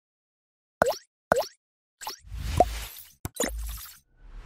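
Logo-animation sound effects: two quick bubbly plops about half a second apart, then swishing whooshes with a short rising blip and a sharp click.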